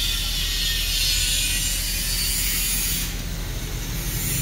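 Honda Click 150 scooter's single-cylinder eSP engine idling, heard close up as a steady, rapid, even pulsing.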